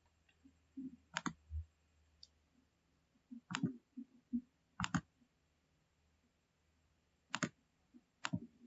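A computer mouse clicking a few times, faintly, with a quick double click about five seconds in.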